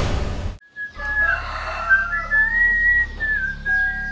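A short, noisy whoosh of a transition sound effect, then, after a brief gap, a whistled melody with sliding notes over a steady low hum.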